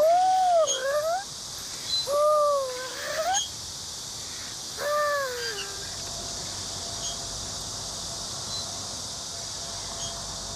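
A young child's high voice calling out in three drawn-out cries that swoop up and down in pitch during the first half, as he plays on a swing; after that only a faint steady hiss remains.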